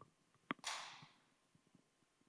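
A pause with near silence. About half a second in there is a single mouth click, then a brief intake of breath on the speaker's headset microphone.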